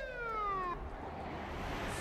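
Police car siren giving a single short whoop, its tone sliding down and dying away within the first second.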